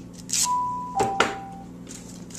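Masking tape being torn off the roll into short strips, with a brief rip about half a second in and a couple of clicks. Over it sounds a two-note electronic chime, a higher note followed by a lower one, like a doorbell.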